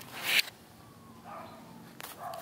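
A brief swish of cloth rubbing against a body-worn camera's microphone, rising and cutting off about half a second in. Faint low-level sound follows.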